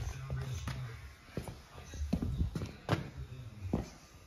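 Several sharp, irregular knocks over faint background talk.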